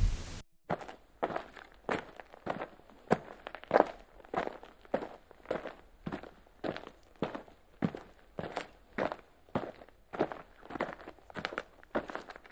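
Footsteps at a steady walking pace, a little under two steps a second, each a short distinct impact. They begin right after the music cuts off, about half a second in.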